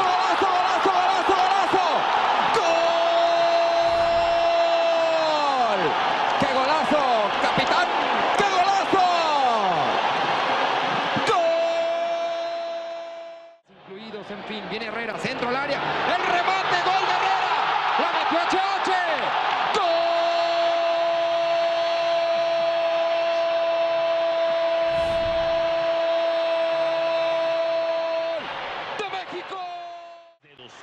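Football stadium crowd cheering a goal on a TV broadcast, with a commentator's long, steadily held "gooool" shout over it. This happens twice, with a brief drop in sound about halfway through where one goal clip gives way to the next.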